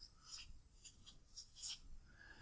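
Marker pen writing on paper: a handful of faint, short strokes of the felt tip scratching across the sheet.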